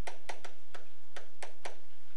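Quick series of sharp taps, about seven in two seconds, from a stylus striking a touchscreen as a word is handwritten, over a steady low electrical hum.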